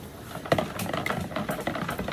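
Stick blender running in a plastic pitcher of soap batter, its head knocking and rattling against the container, pulsing the oils and milk lye solution toward emulsion. The blender sound comes in about half a second in.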